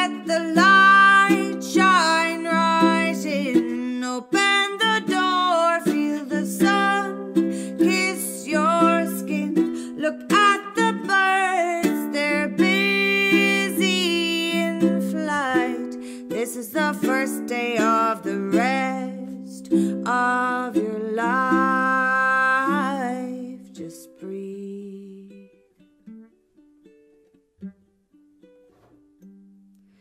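A woman singing to her own ukulele accompaniment, in a small room. After about 23 seconds the voice stops and the music dies down to a few faint, scattered ukulele notes.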